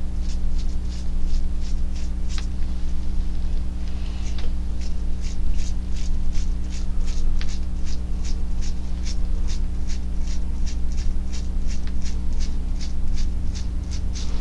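Thumb flicking the bristles of a paint-loaded toothbrush to spatter acrylic paint onto a canvas: a run of short, crisp flicks, sparse at first, then a steady three or so a second. A steady low hum sits underneath.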